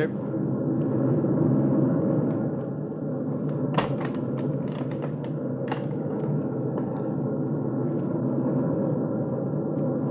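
Radio-drama sound effect of a bomber's engines droning steadily, swelling slightly in the first two seconds, with a few short clicks or knocks about four and six seconds in.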